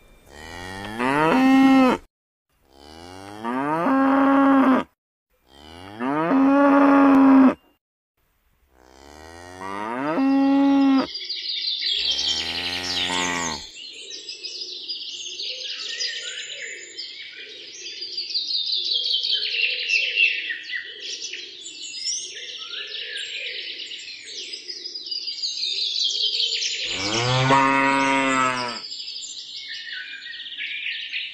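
Cows mooing: four long moos cut apart by short silences, then a lower moo. From about eleven seconds in, birds chirp steadily behind, and one deep moo comes near the end.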